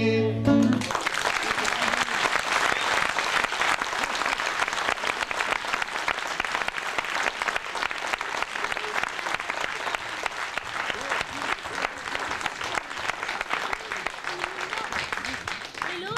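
A held sung note and an acoustic guitar chord end under a second in. Audience applause follows and fades away gradually.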